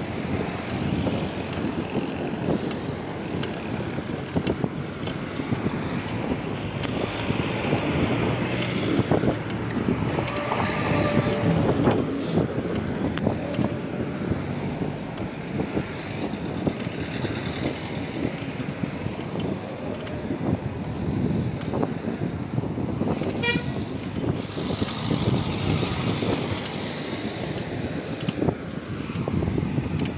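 Street traffic at night: a steady rumble of car engines and tyres on the road. A car horn toots briefly about ten seconds in.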